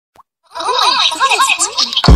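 A voice sample at the opening of a hip-hop track, entering about half a second in, its pitch sweeping up and down repeatedly with no clear words.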